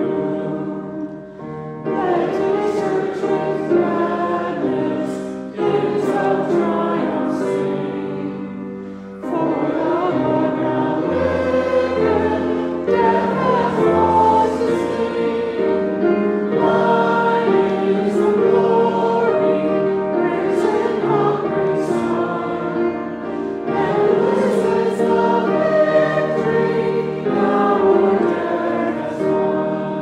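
Choir singing a sacred piece in sustained, overlapping parts, phrase by phrase, with short breaks between phrases.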